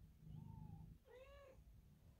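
Faint cat mews: a thin short call near the start, then a clearer, higher one about a second in, over a low, steady purr that pauses briefly between them.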